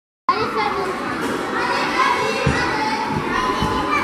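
Many children's voices chattering and calling at once, echoing around a large gymnastics hall, with a couple of dull thumps in the second half.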